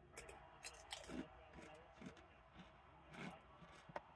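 Faint crunching of a ridged potato chip being bitten and chewed, a series of short irregular crackles.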